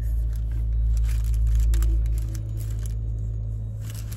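White bakery tissue paper crinkling and rustling around donuts being handled, in irregular crackles over a steady low rumble.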